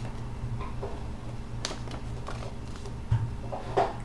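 A sheet of paper being handled and folded, with a few short crinkles and taps against a steady low hum.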